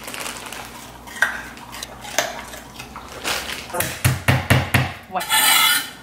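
Kitchen knife chopping on a cutting board: scattered knocks and clinks, then a quick run of about five chops around four seconds in, followed by a brief rustle near the end.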